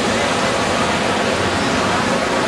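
Steady rush of surf breaking and washing through the shallows.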